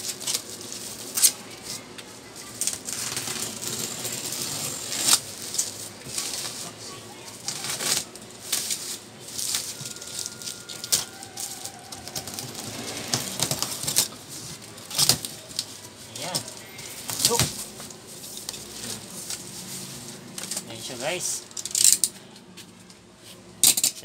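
Bubble wrap and plastic wrapping on a cardboard box crinkling, crackling and tearing as it is cut with a utility knife and peeled away. Sharp irregular crackles and rustles come throughout.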